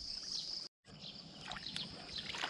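Faint water sloshing from a person wading in a muddy pond, under a steady high-pitched drone. The sound drops out completely for a moment just under a second in.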